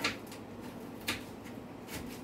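A few short knife clicks against a cutting board as a scotch bonnet pepper is cut up, the loudest about a second in, over a low steady room hum.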